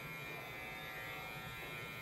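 Electric hair clippers running with a faint, steady buzz.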